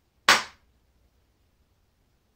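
A single sharp crack-like impact about a third of a second in, dying away within a quarter of a second.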